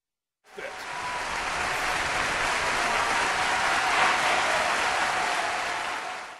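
Applause from a crowd clapping. It starts abruptly about half a second in and carries on steadily at an even level.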